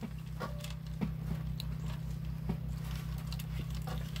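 Plastic gold pan being worked in a tub of water to wash off the light material: soft water sloshing with a few faint clicks of gravel in the pan, over a steady low hum.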